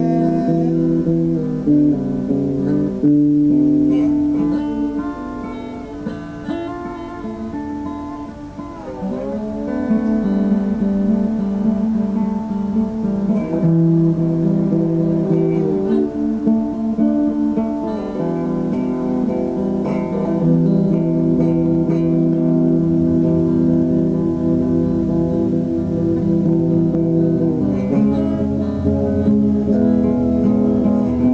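Acoustic guitar music: chords strummed and held, changing every couple of seconds, softer for a few seconds before picking up again.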